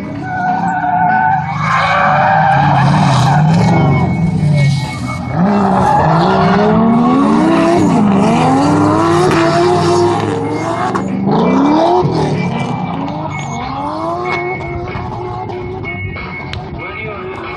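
Drift car engine revving hard, its pitch repeatedly climbing and dropping with throttle and shifts, over sustained tire squeal as the car slides sideways around the course. Loudest through the middle, fading off near the end as the car moves away.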